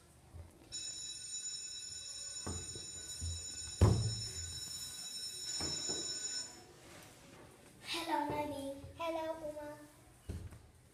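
A steady high-pitched electronic ringing starts just under a second in and cuts off suddenly after about six seconds, with a single loud thump about four seconds in. Near the end come a child's drawn-out wordless vocal sounds.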